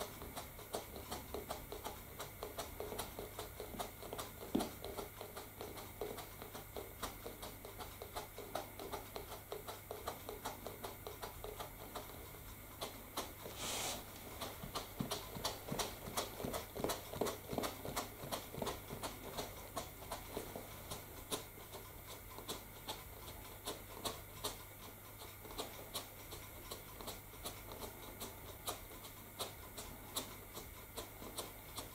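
Handheld static grass applicator being shaken and tapped over glued scenery, giving a fast, irregular ticking and rattling of several clicks a second, with a brief hiss about 14 seconds in.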